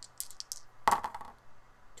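Dice thrown onto a cardboard game board: a few light clicks, then a loud clatter as they land about a second in, with a couple of fainter ticks as they settle.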